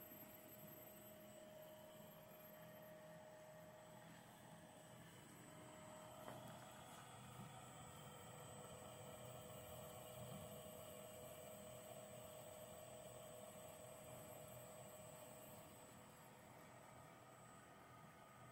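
Near silence, with a faint steady hum from a fine-wire respooler running as it winds wire onto the spool.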